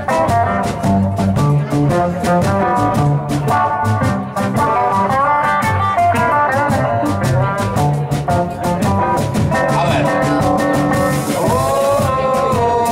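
Live blues band playing an instrumental passage: electric guitars over upright double bass and a drum kit keeping a steady beat.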